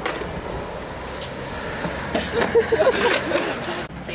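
A heavy truck driving past on the street. About two seconds in, short pitched calls and a few knocks come in over it.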